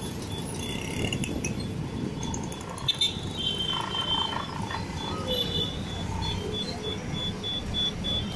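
Bus running through town traffic, heard from inside the cabin: a steady engine and road rumble with rattling. A high, thin beep starts about three seconds in and repeats as short, evenly spaced pips through the rest of the clip.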